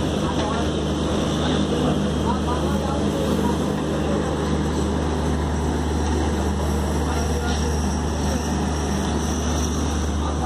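Electric multiple-unit suburban train running through the yard, heard from its open doorway: a steady low electric hum over a constant rumble of the moving train.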